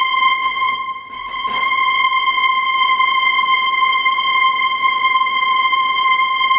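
Spitfire Audio Originals Epic Strings ensemble ("Strings Live" patch) holding one high note at the top of its range, a single steady pitch. It dips briefly about a second in and swells back.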